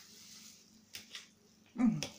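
Faint clicks of a spoon against an enamel pot and a glass jar as roasted vegetables are packed into the jar. Near the end comes a short, louder vocal sound whose pitch bends down.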